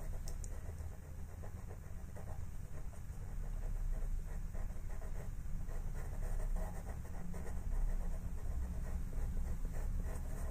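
Faber-Castell Pitt pastel pencil scratching on paper in short, irregular strokes, a little louder from about four seconds in, over a low steady room rumble.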